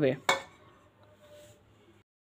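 A brief clink of a metal utensil against the cooking pot, about a third of a second in.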